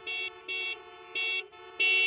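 Car horns honking in a traffic jam: three short high toots, then a longer, louder blast near the end, over a steady lower horn tone.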